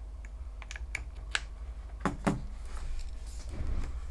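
Several light, sharp clicks in the first second and a half, then a couple of duller knocks about two seconds in, from handling a smartphone with a keyboard's USB cable and a USB-C OTG adapter being plugged into its port.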